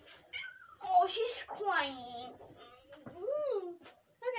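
Domestic cat meowing as it is picked up and held: a harsh burst about a second in, then a drawn-out meow that falls in pitch, and a shorter meow rising then falling near the end.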